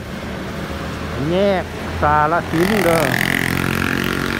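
Road traffic passing below, a steady low rumble of car engines and tyres. A louder rushing noise sets in about two and a half seconds in.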